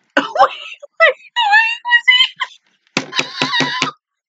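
High-pitched Japanese voice dialogue from an anime, in short, animated phrases. About three seconds in comes a burst of rapid, high-pitched laughter lasting about a second.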